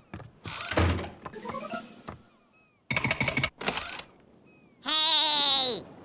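Cartoon soundtrack of music and sound effects. A rising run of notes comes about half a second in, a short clattering burst follows around three seconds, and a loud wavering, warbling cry near the end.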